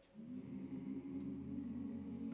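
A cappella barbershop chorus of mixed voices entering softly on a low, sustained chord just after a brief pause, and holding it steady.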